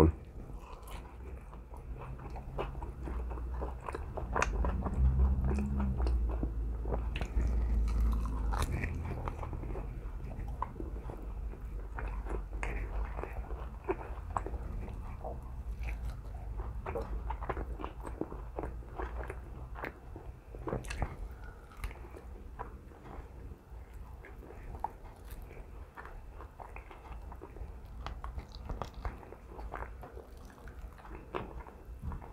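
A person biting and chewing the meat off a sauced bone-in chicken drumette close to the microphone, with many small mouth clicks throughout. The chewing is loudest between about 4 and 9 seconds in.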